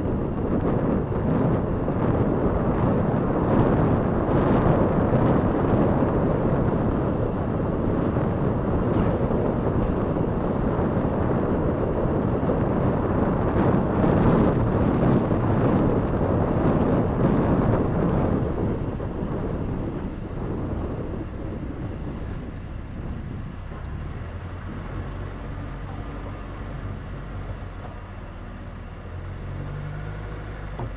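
Car rolling slowly over a rough, unpaved dirt street, heard from inside the car: a steady low rumble of tyres and road noise. About two-thirds of the way in it drops to a quieter, low engine-and-road rumble as the car slows.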